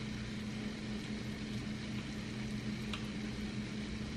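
Breaded zucchini slices frying in oil in a tall stockpot, a weak, steady sizzle over a constant low hum, with one light click about three seconds in.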